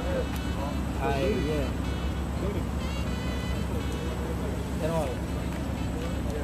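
Lamborghini engine idling with a steady low hum, with voices talking around the car.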